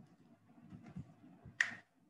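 A single short, sharp click or snap about one and a half seconds in, over a faint low murmur of background noise.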